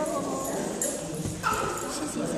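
Small dogs playing on a concrete floor, one giving a short high yip about a second and a half in.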